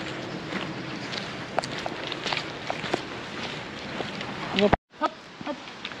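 Footsteps of a person and a dog walking on a dirt path: scattered light ticks and scuffs over outdoor background. A short voice sound comes near the end, then the sound cuts off abruptly.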